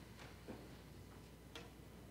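Near silence, with two faint knocks, about half a second in and again about a second later, as people stand up from their seats.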